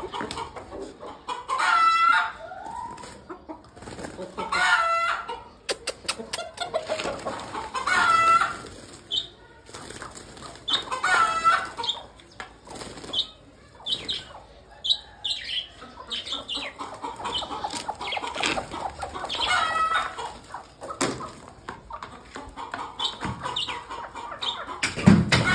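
Domestic chickens just let out of a crate, with wing flapping and several loud calls, each about a second long.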